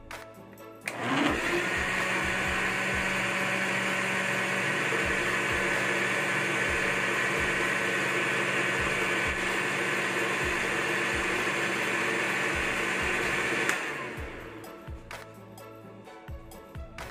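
Countertop blender motor running steadily as it whips chilled cream toward stiff peaks. It starts about a second in and cuts off near the end, winding down briefly.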